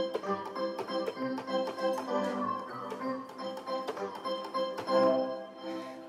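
Organ-like notes from a Google Magenta neural-network synthesizer set close to its organ sound, played from a keyboard: a run of held notes that change about once a second.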